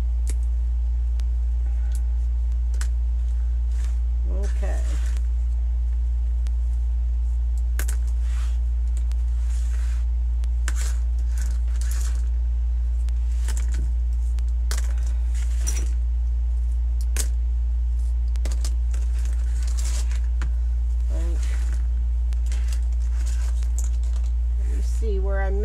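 Clothespins clicking and clattering as they are worked loose from hot-glued deco mesh and dropped onto the table, with rustling of the mesh, over a steady low hum. A brief vocal murmur comes twice, a few seconds in and near the end.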